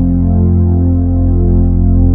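Electronic keyboard holding a low sustained chord at the end of a hymn accompaniment, steady and loud.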